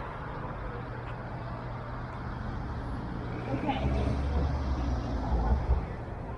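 City street traffic at an intersection: a steady low drone of passing cars. About four seconds in, a vehicle's low rumble grows louder, then cuts off shortly before the end.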